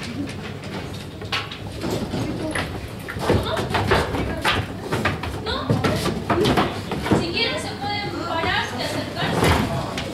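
Wooden knocks and thumps from a slatted-floor wooden pen as a man climbs in and grabs a sheep, scattered sharp impacts throughout.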